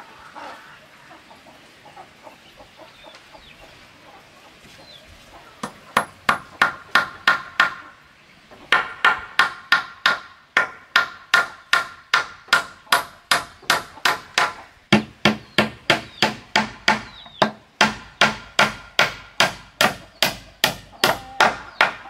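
Hammer driving nails into wooden planks, in steady strokes of about three a second. It starts about six seconds in, pauses briefly near eight seconds, then keeps going without a break.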